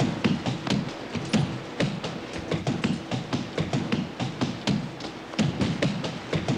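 Hard-soled footsteps hurrying across a hard floor: a quick, irregular run of taps and thuds, about four to five a second.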